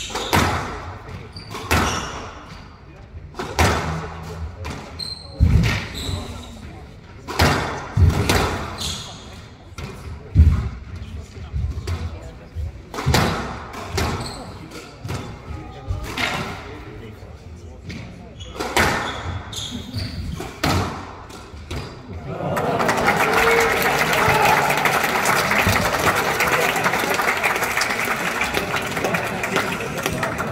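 Squash rally: the ball struck hard by racquets and slapping off the front and side walls, a sharp smack every second or two, with shoes squeaking now and then on the wooden court. About three quarters of the way in the rally ends and the audience breaks into applause.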